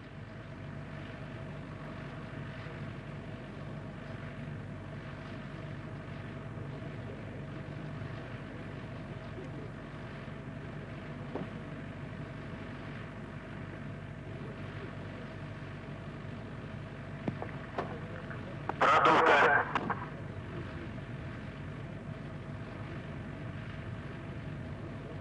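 Steady mechanical hum with a few held tones, the ambient sound at the launch pad of a fueled Soyuz-2.1a rocket. About nineteen seconds in, a louder, higher-pitched burst lasts about a second and a half.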